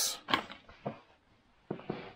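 Quiet handling sounds: a brief rustle of a paper sheet being laid in a box of plastic slot-car track pieces, then a few faint light clicks with a short silent gap.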